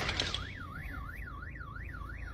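Car alarm going off just after a thump, its warbling siren tone sweeping up and down about three times a second: set off by a bump while reversing into a parking space.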